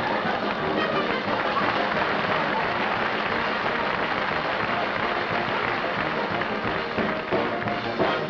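Studio orchestra playing a lively dance tune at a steady level, with audience applause mixed in.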